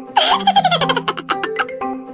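A high-pitched giggle that rises and then tumbles down in pitch through a quick run of 'ha-ha-ha' notes, laid over light marimba background music.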